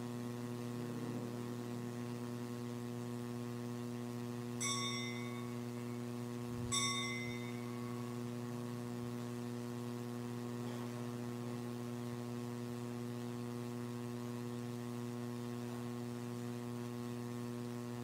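Steady electrical mains hum, with two brief ringing metallic clinks about two seconds apart, near the first third.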